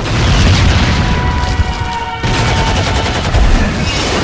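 Explosion and gunfire sound effects with a heavy low rumble, layered over dramatic music, with a fresh burst about two seconds in.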